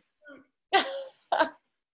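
A person clearing their throat: two short bursts about half a second apart.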